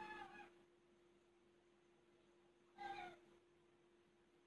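Whiteboard marker squeaking on the board during writing: a faint, high squeal that trails off in the first half second, then a short squeak about three seconds in that drops in pitch. A faint steady hum runs underneath.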